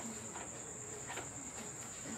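Steady high-pitched chirring of crickets in the background, with a couple of faint light taps from paper and pencil being handled.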